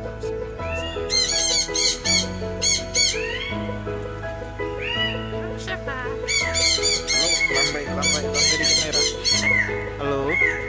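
Parrot squawking in quick runs of short calls, a burst about a second in and another from about six seconds, over background music of steady held chords.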